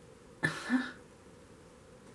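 A woman's single short cough, about half a second in.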